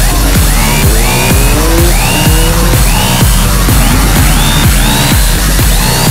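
Electronic dance music with a steady beat and repeating rising synth sweeps.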